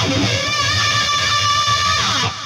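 ESP LTD MH-401FR electric guitar playing the solo's opening lead: one sustained note bent up at the 15th fret and held, wavering slightly in pitch, through wah, chorus and delay.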